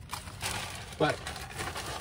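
Clear plastic bag crinkling and rustling as hands dig through it.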